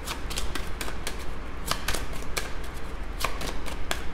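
A deck of tarot cards being shuffled hand over hand: a run of quick, irregular card flicks and slaps.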